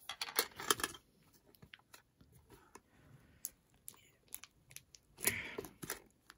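Plastic-wrapped metal collector's tin being handled: crinkling of the wrap and scattered small clicks and taps, busiest in the first second and again in a short burst about five seconds in.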